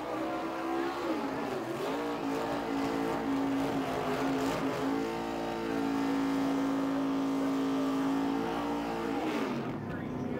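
NASCAR Cup car's V8 engine revving hard during a victory burnout, the rear tyres spinning in smoke. The revs dip briefly about a second and a half in, hold high and steady from about five to nine seconds, then fall away just before the end.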